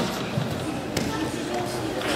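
Voices of people talking and calling out, echoing in a gymnasium, with a sharp knock about a second in.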